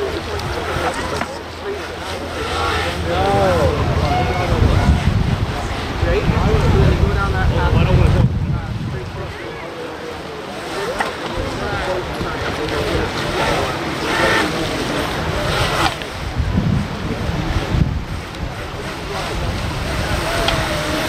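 Rushing creek water and wind buffeting the microphone, with people's voices faintly in the background; the low rumble swells heavily twice.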